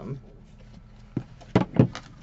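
Paper folio being unfolded and laid out on a tabletop: a light knock about a second in, then two sharp slaps of paper close together near the end.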